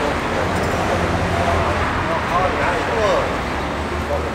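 Street ambience: a steady low traffic hum, with people talking in the background now and then.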